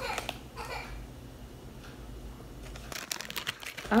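Small plastic bag crinkling in a short burst near the end, as a packet of clay is handled, after a few faint rustles.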